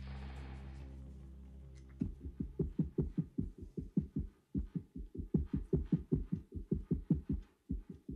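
Runway show music: a held chord fades away over the first two seconds, then a muffled, bass-only pulsing beat starts at about four beats a second, dropping out briefly near the middle and again near the end.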